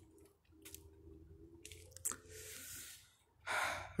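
Quiet breathing close to a phone microphone, with a few small handling clicks and a soft breath out about two seconds in, then a sharp breath in near the end.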